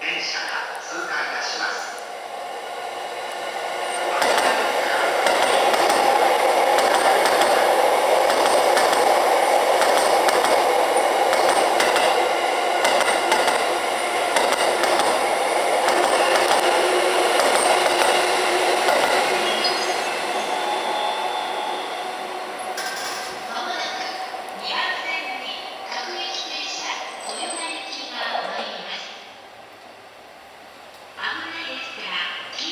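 Orange-striped Chuo Line rapid train, a JR East E233 series electric train, passing through the station at speed without stopping. Wheel and running noise builds about four seconds in, stays loud for around fifteen seconds as the cars go by, then fades away.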